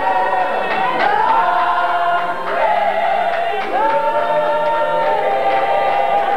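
A group of voices singing a hymn together in long held notes that slide from one pitch to the next.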